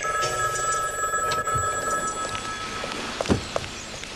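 Desk telephone ringing, one long ring of about three seconds, followed by a sharp thump a little after three seconds in.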